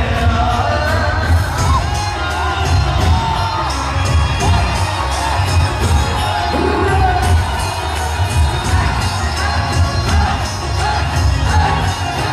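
Loud live music with a heavy pulsing bass beat and singing, with a crowd cheering over it.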